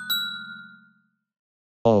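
A short intro jingle of bell-like chime notes, the last note struck just after the start. The notes ring out and die away within about a second.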